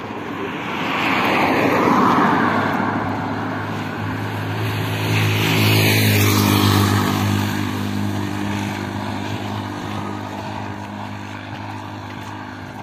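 Motor vehicles passing close by on a paved road, one about two seconds in and a louder one around six seconds, with engine hum.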